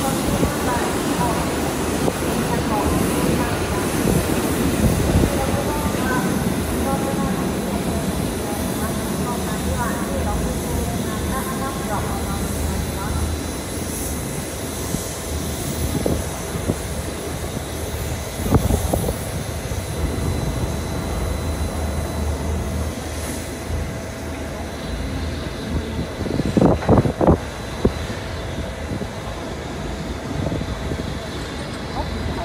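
Locomotive turntable turning with a steam locomotive on it: a steady low mechanical running hum, with a sharp knock just past the middle and a quick cluster of knocks near the end. Crowd voices murmur in the background, mostly in the first half.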